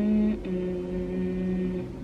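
A woman humming to herself: a short higher note, then a lower note held steadily for over a second.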